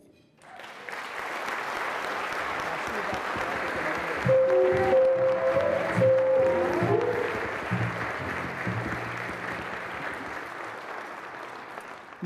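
A large banquet audience applauding. A small live band joins in about four seconds in with a short tune: a few held melody notes over steady bass notes. The clapping tapers off toward the end.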